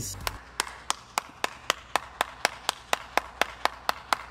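One person clapping on their own at a steady pace, about four claps a second.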